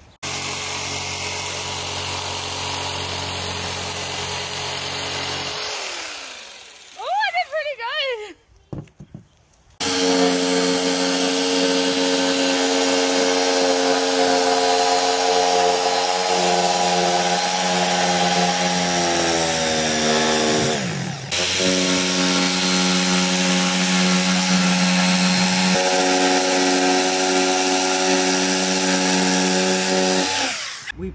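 Handheld Black+Decker electric jigsaw cutting a curve through an OSB sheet, its motor and blade running at a steady pitch. It runs for about six seconds, stops with a couple of brief restarts, then cuts steadily from about ten seconds in, slowing briefly once about two-thirds of the way through.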